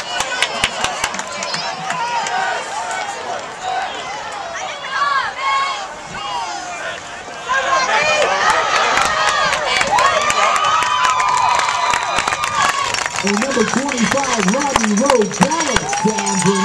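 Spectators at a football game yelling and cheering during a play, many voices at once. The shouting gets louder about halfway through as the play develops, and a man's voice is heard near the end.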